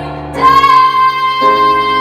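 A woman singing into a microphone: about half a second in she starts one long, steady high note and holds it, over a sustained instrumental accompaniment whose chord changes about a second and a half in.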